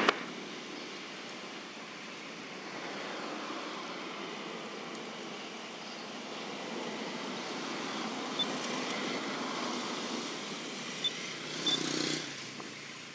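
Steady outdoor background noise that swells and fades gently, with a few small clicks in the second half.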